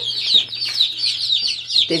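A brood of about thirty young chicks peeping together, a dense, continuous stream of short, high, falling chirps.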